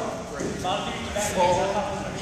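Indistinct chatter of several people talking, no single voice clear.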